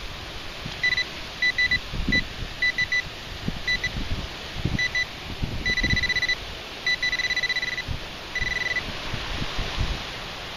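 Handheld pinpointer, a Garrett Pro-Pointer, probing a dug hole in the soil: short beeps of a single high tone in ones, twos and threes, running together into three longer steady buzzes in the second half as the tip comes close to a buried metal target. Low rumbles of wind on the microphone underneath.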